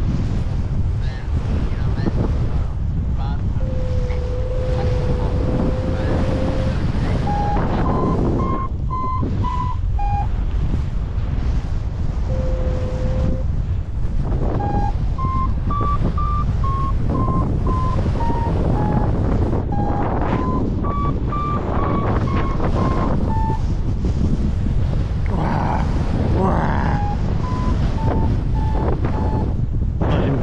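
Wind rushing over the microphone in flight under a paraglider, with a variometer beeping in short tones whose pitch steps up and down as the climb rate changes in thermal lift. Twice, a longer, lower steady tone sounds from it.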